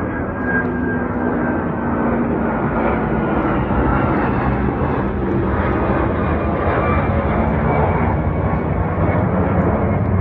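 A twin-engine widebody jet airliner flying low overhead, its turbofan engines making a loud, steady roar. A faint whine in the roar drops slightly in pitch during the first few seconds as the jet passes.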